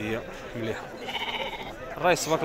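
A sheep bleating once, a wavering call of under a second starting about a second in, among men's voices in a crowded sheep pen.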